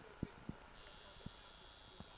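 Quiet room tone with a few soft knocks in the first second and a half. Under a second in, a faint steady high hiss starts abruptly and carries on.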